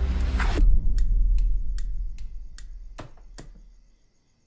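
A low rumble that slowly fades away, under a steady ticking of about two and a half ticks a second, like a clock in a quiet house. It is a trailer's tension effect.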